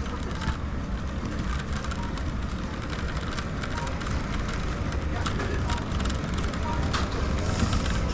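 Shopping trolley rolling over a supermarket floor: a steady low rumble with light rattles and clicks.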